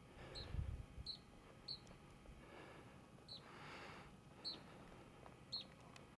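A small bird chirping faintly: about six short, high chirps, each dropping slightly in pitch, spaced irregularly about a second apart over a quiet background. A brief low rumble on the microphone comes about half a second in.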